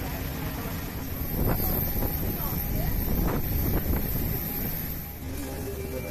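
Steady low rumble of outdoor airport apron noise with wind buffeting the microphone. It grows heavier in the middle few seconds, with a few short knocks.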